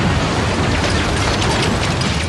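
Film sound effect of many flying swords clattering: a dense run of rapid metallic clicks and rattles over a deep rumble of surging water.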